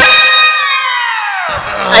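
An editor's comedy sound effect: a bright ringing tone that starts suddenly and glides down in pitch, fading out over about a second and a half. Voices come back in near the end.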